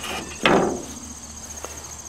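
Metal grill grate from an old propane grill set down into the grill bowl: one clank about half a second in that fades out, then a small click. Crickets chirp steadily throughout.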